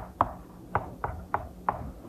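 Chalk tapping against a chalkboard while capital letters are written: about six short, sharp taps at uneven intervals, stopping shortly before the end.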